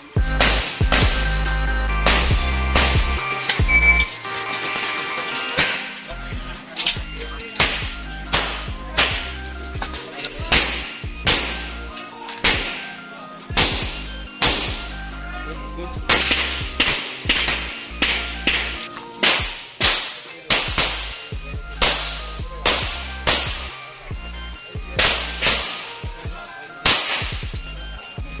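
Handgun shots in quick strings, dozens of sharp cracks each with a short ringing tail, over background music with a steady low bass.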